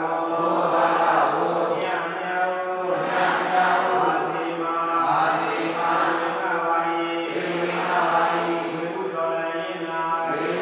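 Voices chanting together in unison: long held notes in short phrases that repeat about every two seconds.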